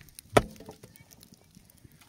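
A single sharp crack of dry wood about a third of a second in, from the sticks of a small campfire, followed by a few faint ticks.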